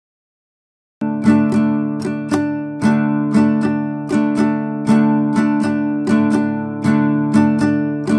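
Nylon-string classical guitar strummed with a 3D-printed guitar pick, starting about a second in: the same chord struck over and over, about two to three strums a second, as a test of how the printed pick sounds.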